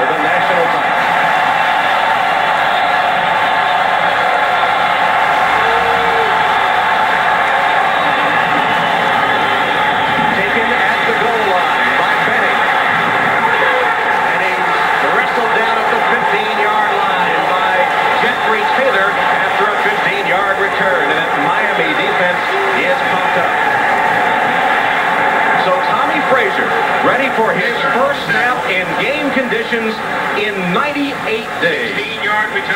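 Steady stadium crowd noise during a football kickoff and the play that follows, heard through a TV broadcast's sound with the upper treble cut off.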